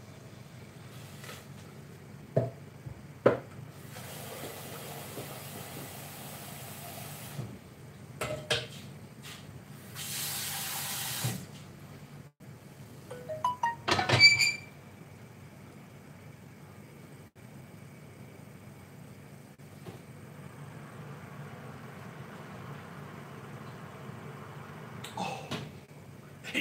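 Kitchen tap running into a stainless steel saucepan to top up water that has been boiling off: two runs of water, the second louder, with a few knocks of the pan. About 14 seconds in, the pan is set back down on the gas hob's metal grate with a cluster of sharp metallic clanks.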